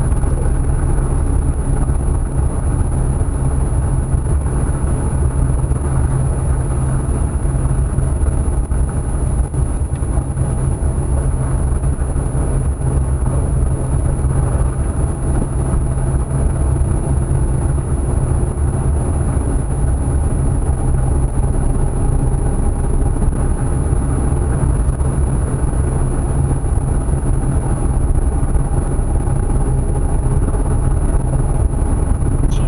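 A car's engine and road noise heard from inside the cabin while driving slowly along a street: a steady low drone, with a constant high-pitched whine over it.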